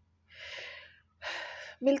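A woman breathing audibly twice between sentences, two breaths of about half a second each, before she starts speaking again near the end.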